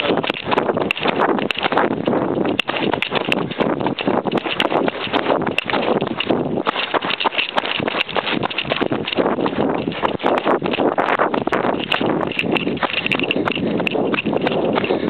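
Two people running on a dirt trail: quick, steady footfalls, with the rubbing and knocking of a jostled handheld microphone.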